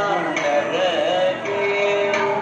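Music with a voice singing long held notes, and a wavering, ornamented phrase in the middle.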